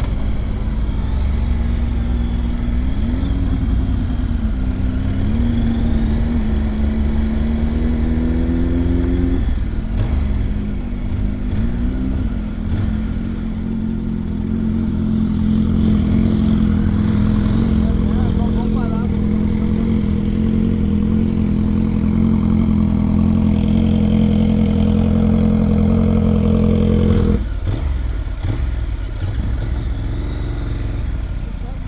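Honda NC 750's parallel-twin engine running at low speed, rising gently in pitch as it pulls away, breaking off about nine seconds in, then holding a steady note, with wind rumbling on the microphone. The engine note drops away abruptly near the end.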